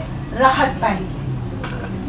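Glass bowls and a glass bottle clinking lightly as they are handled on a stone countertop, with a couple of short clinks near the end.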